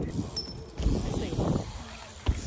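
BMX bike rolling across plywood skatepark ramps, with mechanical clicking and ticking from the bike and a short high squeak about a third of a second in.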